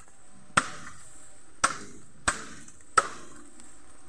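Machete chopping bamboo: four sharp, separate strikes, roughly a second apart.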